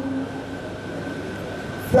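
A pause in a chanted Quran recitation: the last note dies away and the steady hiss and hum of the microphone and sound system fill the gap, with a short sharp intake of breath near the end as the recitation resumes.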